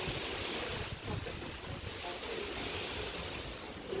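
Wind buffeting the phone's microphone: a steady rumble and hiss that rises and falls slightly.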